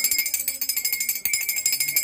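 Brass puja hand bell rung rapidly and continuously, with a bright, ringing sound that cuts off suddenly at the end.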